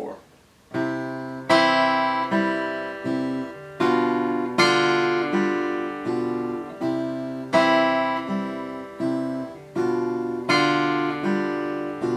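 Martin 0-28K acoustic guitar fingerpicked in a slow arpeggio study, starting about a second in. The thumb plays bass notes on the 5th, 4th and 3rd strings under the top two strings, moving between C and G7/B chords. The second beat is accented, deliberately exaggerated.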